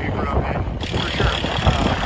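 A man talking over a heavy low rumble of wind on the microphone.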